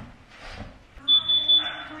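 A single high-pitched electronic beep about a second in, held steady for under a second, with other louder sounds alongside it.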